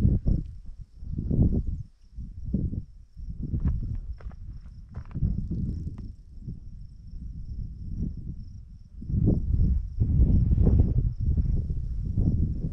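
Wind buffeting the microphone in uneven gusts, heaviest in the last three seconds, over a faint steady high-pitched tone.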